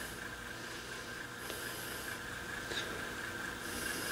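Faint steady electrical hum, a low drone with its overtones, under light hiss, on a repair bench where an old valve radio's supply voltage is being slowly raised.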